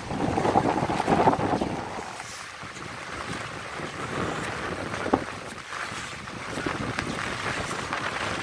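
Floodwater churning and splashing as the camera moves through it alongside the road divider, with wind on the microphone. It is louder in the first two seconds, with a brief knock about five seconds in.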